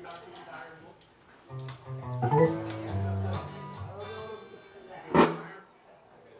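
Live band instruments played sparsely rather than a full song: a few plucked guitar notes and low sustained notes about two to three seconds in, then a single sharp drum hit about five seconds in, the loudest moment.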